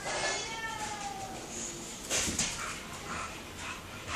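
A dog whining in one long, slowly falling call near the start, followed by a few knocks and scuffles about two seconds in.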